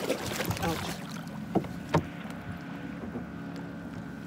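Kayak being jostled as a person leans over its side and reaches into the water, with two sharp knocks on the hull about one and a half and two seconds in. A faint voice or grunt comes in early.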